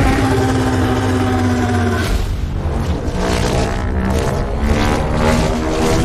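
Sound-designed giant-ape monster roar from a film trailer, loud and long with deep sustained pitched layers, starting suddenly. A second long roar takes over about two seconds in, mixed with trailer score.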